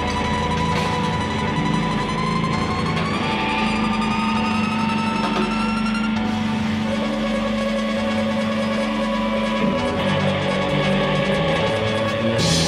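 Electric guitars droning through amplifiers: long held notes, one sliding slowly upward in pitch in the first half, with no drumbeat.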